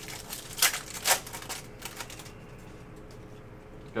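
Foil trading-card pack being torn open and the cards inside handled: a few sharp crinkles of the wrapper in the first couple of seconds, then quieter rustling of cards.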